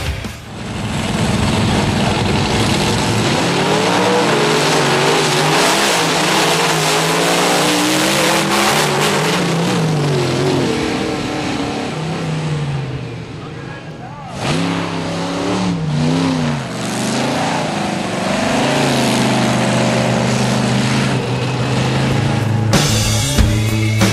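Monster truck engines racing and revving, their pitch rising and falling repeatedly as the throttle is worked. There is a short lull about two-thirds of the way through before the revving picks up again.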